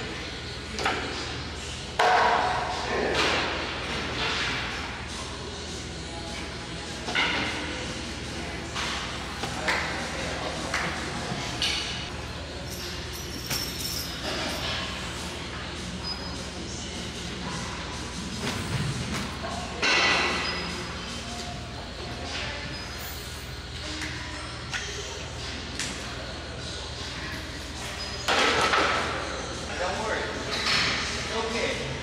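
Iron weight plates clanking and thudding on a barbell and rack in a large, echoing gym, with background chatter and music.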